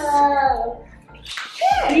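Speech only: a woman's drawn-out, hesitant "uh", then a breathy hiss running into voices as the next words begin.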